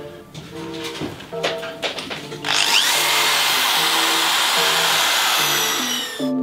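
Power drill boring into the dry deadwood of a cypress stump. It starts about two and a half seconds in and runs steadily with a high whine until just before the end, over background music.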